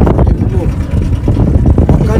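Outboard motor of a small boat running with a steady low rumble, with men's voices talking over it.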